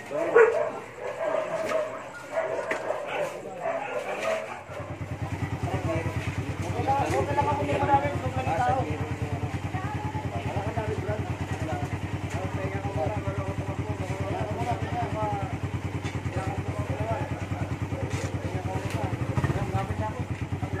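A motorcycle engine catches about five seconds in and keeps running at a steady, pulsing idle. The bike is being restarted after going down in a crash, and it had been slow to start.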